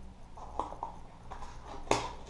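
Hard plastic blister pack of a fishing lure being worked open by hand: light crinkles and scattered clicks, with one sharp plastic snap near the end.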